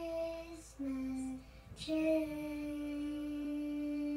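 A young girl singing, holding sustained notes: two short notes, then one long held note from about two seconds in.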